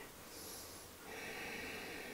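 Faint breathing by a man holding a low lunge: a short, soft airy breath about half a second in, then a longer, quieter one through the second half.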